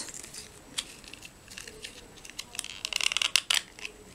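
Plastic and foil ration wrapper crinkling and tearing as a survival tablet packet is opened by hand. Scattered small crackles build to a denser burst of crinkling about three seconds in.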